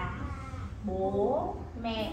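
Speech: a high voice, with one drawn-out sound rising in pitch about a second in.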